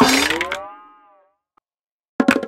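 Cartoon whoosh sound effect with a rising sliding tone as pillows swing at a tower of plastic cups, fading out within about a second and then cutting to silence.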